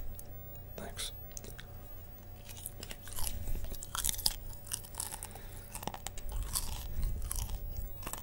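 Popcorn being chewed close to the microphone: irregular crunches and wet mouth sounds, coming thicker about halfway through.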